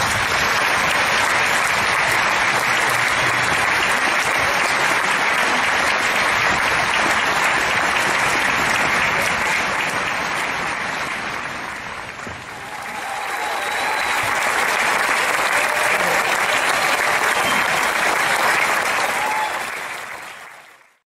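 Audience applauding at length, the clapping dipping briefly about twelve seconds in and then swelling again.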